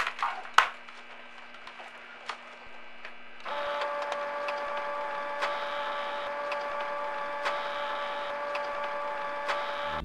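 A photocopier makes a copy. A few sharp knocks come in the first second or so. From about three and a half seconds in, the copier runs with a steady whining hum and faint regular ticks.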